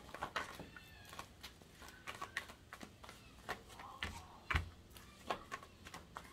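Tarot cards being shuffled by hand: a run of soft, irregular card flicks and taps, with a heavier soft thump about four and a half seconds in. A faint distant voice-like call sounds briefly in the first second or so.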